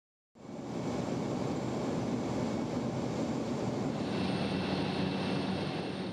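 Steady drone of a small floatplane's engine and propeller heard from inside the cabin, fading in during the first half second.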